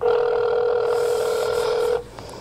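Telephone ringback tone: one steady two-second ring signal heard through the phone line while the called phone rings, starting and stopping sharply.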